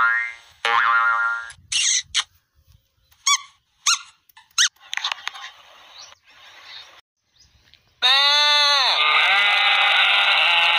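Short cartoon 'boing' sound effects, wobbling in pitch, come one after another with quiet gaps between them. About eight seconds in, a loud pitched sound effect starts, bending down in pitch and back up.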